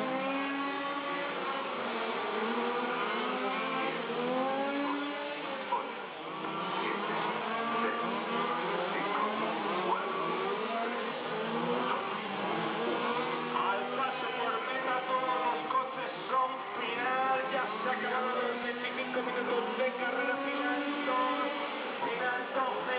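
Several radio-controlled race cars running around the circuit, their motors rising and falling in pitch as they accelerate and slow through the corners.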